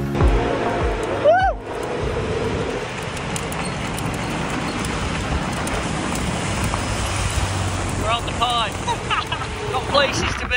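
Steady rush of wind and road noise from two people riding a small bike. A short rising call comes about a second in, and brief voices near the end.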